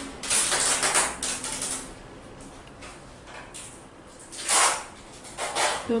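Short, soft rubbing hisses from a gel nail brush being wiped clean on a wipe between strokes down a practice nail tip, heard three times: over the first second and a half, about four and a half seconds in, and just before the end.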